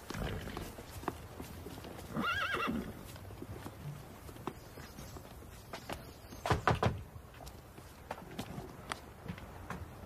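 A horse whinnies once, a pitched call that rises and falls, about two seconds in. About six and a half seconds in comes a quick run of sharp knocks.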